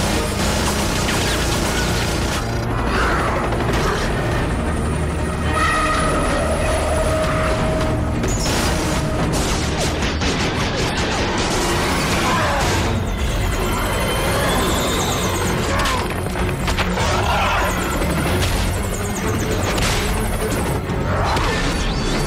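Action-film soundtrack: a dramatic music score mixed with heavy booms and crashes from a monster fight.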